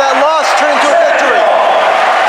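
A man talking, over steady background crowd noise.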